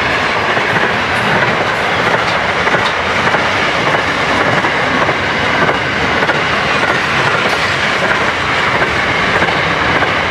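Freight train wagons passing close by at speed: a loud, steady wheel-on-rail noise with clickety-clack from the wheels.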